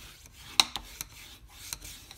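Bone folder rubbed along the fold of a sheet of cardstock, creasing the card base flat, with a sharp tap about half a second in and a few lighter ticks.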